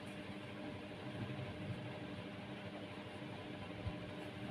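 Steady low hum and hiss of room tone, with a single soft knock just before the end.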